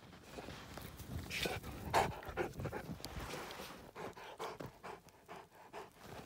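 A Saint Bernard panting hard in quick, rhythmic breaths, with snow crunching and shifting as it pushes through deep drifts during the first few seconds.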